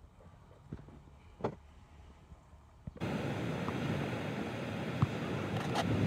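Quiet with a few faint clicks, then, about three seconds in, a sudden steady rush of ocean surf and wind buffeting the microphone.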